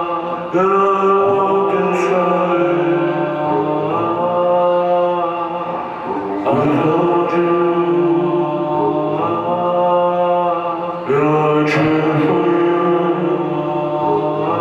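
Live droning music: sustained chords over a steady low note, swelling afresh about every five seconds, with a long-held, chant-like vocal through a microphone.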